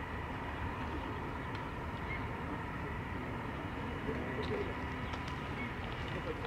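Steady outdoor background noise with faint bird calls now and then.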